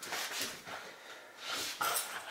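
A dog making short breathy noises in a few quick bursts, close by.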